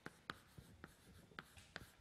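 Chalk writing on a blackboard: a faint series of short chalk taps and strokes, about six in two seconds, as letters are written.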